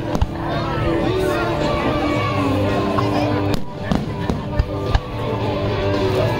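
Fireworks shells bursting with sharp bangs, a few louder ones late on, over steady music and voices.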